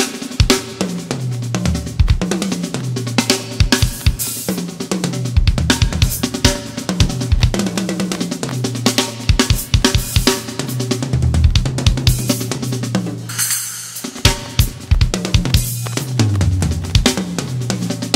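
A drum kit played solo: fast, dense fills around snare and toms over bass drum, with cymbal crashes and hi-hat. One big cymbal wash rings out about thirteen seconds in.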